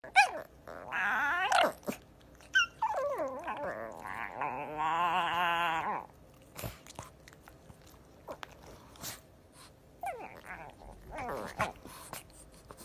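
A puppy whining and growling in play, in a few drawn-out, wavering calls. The longest runs from about four to six seconds in, and fainter ones come near the end.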